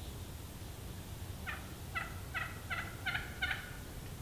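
A run of six turkey yelps, about three a second, each louder than the last.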